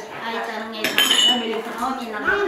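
Stemmed drinking glasses clinking together in a toast, one sharp clink about a second in with a brief high ring, amid the clatter of tableware and background chatter.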